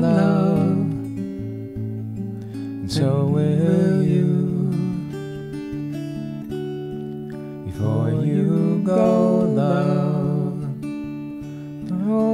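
Steel-string acoustic guitar fingerpicked in a slow, gentle accompaniment. Over it a voice sings long, wavering held notes in three phrases: at the start, about three seconds in and about eight seconds in.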